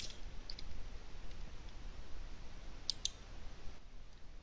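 Computer mouse clicking while an option is picked from a web page's drop-down menu: a couple of faint ticks early on, then two quick, sharp clicks about three seconds in, over a low steady hiss.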